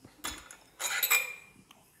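Stainless steel parts of a Bellman CX-25P stovetop espresso maker clinking and scraping as it is taken apart: a short clink about a quarter second in, then a louder metallic scrape that rings briefly around a second in.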